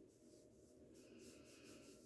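Faint rubbing of a cotton pad soaked in rose water wiped across the skin of the face, in soft, irregular strokes.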